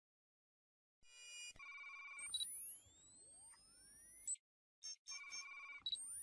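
Electronic logo-intro sound effects. After about a second of silence comes a warbling, ringtone-like beep pattern, then several rising whistling sweeps. The beep pattern and sweeps repeat about five seconds in.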